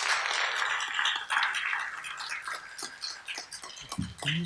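Audience applauding: dense clapping at first, thinning to scattered claps over the last second or two.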